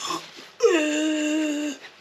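A man's voice making one drawn-out wordless whine. Its pitch drops at the start and then holds for about a second, mimicking a partridge cock feigning a broken wing.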